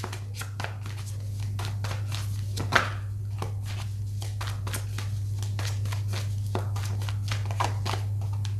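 Tarot cards being shuffled and handled: a run of irregular light snaps and rustles, with one louder snap about three seconds in, over a steady low electrical hum.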